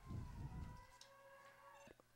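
Near silence, with faint steady high tones in the background.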